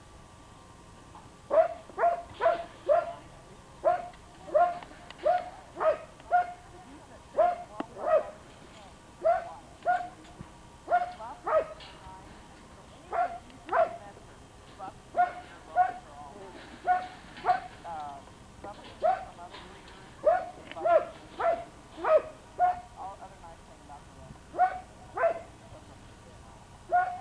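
A dog barking repeatedly: short barks of the same pitch, about two a second in uneven runs, starting a second or so in.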